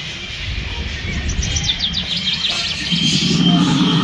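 Small birds chirping in the trees, with a quick run of high, falling notes about a second in. A low rumble builds up near the end.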